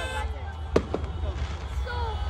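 A single firework bang about three-quarters of a second in, followed by a few fainter pops, with people's voices around it over a steady low rumble.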